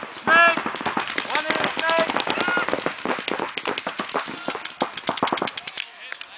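Paintball markers firing rapid, irregular strings of shots, with players shouting over them; the loudest shout comes about half a second in.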